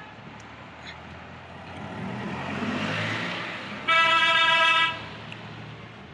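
A vehicle horn gives one steady blast about a second long, about four seconds in, and is the loudest sound here. Under it runs the steady road noise of a moving car, which swells louder and fades shortly before the horn.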